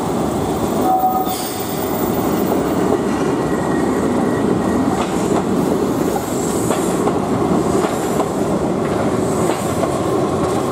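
A Keihan Ishiyama-Sakamoto Line two-car electric train runs past on street track: a steady rumble of wheels and motors with a few light clicks over the rail joints. A short high tone sounds about a second in.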